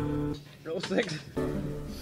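Band music with guitar holding a chord, cut off abruptly a few tenths of a second in, followed by indistinct studio talk between takes.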